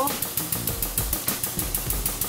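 Hydraulic press running under load as it crushes carbon fiber tubes, with a steady rapid ticking of about eight beats a second over a low hum.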